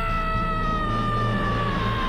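A cartoon boy's long, held scream, sliding slowly down in pitch, over a low music bed.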